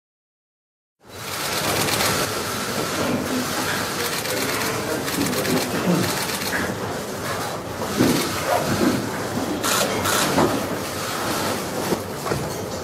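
Room noise of people settling into their seats around a meeting table, starting about a second in: chairs shifting, rustling and low murmur, with many quick sharp clicks.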